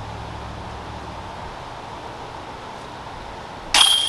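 Steady outdoor background noise, then near the end a sudden metallic clank as a putted disc strikes a metal disc golf basket, with a ringing note that carries on afterwards.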